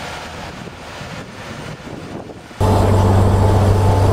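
Machine noise from a Snorkel A62JRT articulated boom lift. For the first two and a half seconds there is a quiet, even rushing sound as it drives over rough ground. Then a loud, steady low hum of its four-cylinder turbocharged Kubota engine starts suddenly.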